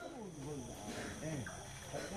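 Faint talk from people in the background during a pause in the amplified speech, over a thin, steady high-pitched hum.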